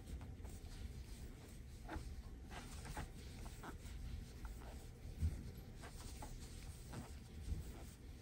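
Faint rustling and light ticks of a crochet hook pulling thick blanket yarn through stitches as double crochets are worked, with a soft low bump about five seconds in.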